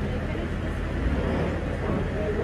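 An armoured military Humvee's diesel engine running with a steady low rumble, with voices in the background.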